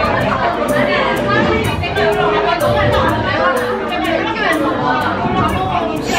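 A woman talking over background music with a steady beat, with chatter around her.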